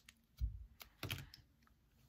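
Hands handling a folded paper origami piece against a tabletop: a dull thump about half a second in, then a sharper knock about a second in.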